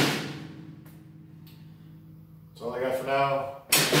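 Drum-kit cymbals ringing out and fading away over about a second and a half as the drumming stops. A man speaks briefly near the end, then there is a sharp knock.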